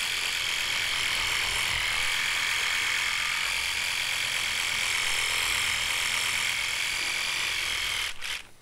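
Electric toothbrush running as it brushes teeth: a steady, unbroken buzz with no change in speed.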